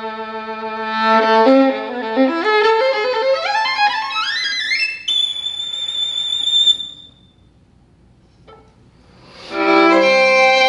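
Solo violin holding a low note, then running up a fast ascending scale to a very high, thin note held for about two seconds. The note stops, a pause of about two seconds follows, and the music comes back in loudly near the end.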